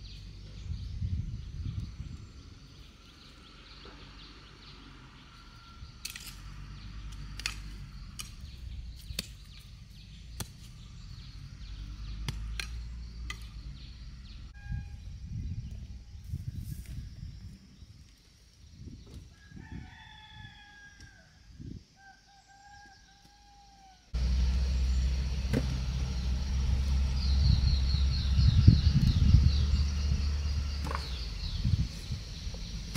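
A rooster crowing twice in a row, about two-thirds of the way through, over scattered soft knocks and rustles of taro being dug out of the soil. Then a louder low rumble sets in suddenly, with a quick run of high bird chirps near the end.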